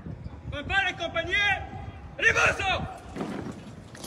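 Two drawn-out shouted calls from a distant voice, the first starting about half a second in and the second just after two seconds, like parade-ground commands to troops in formation.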